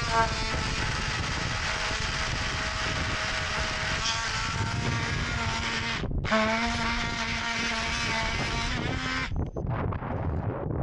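Cordless power saw running under load, cutting into an old wooden hull plank, its motor whine shifting in pitch as it bites. It stops for a moment about six seconds in, starts again, and cuts off shortly before the end.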